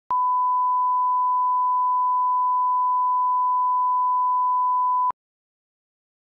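Broadcast line-up test tone played with colour bars: one steady pure tone lasting about five seconds, cutting off suddenly.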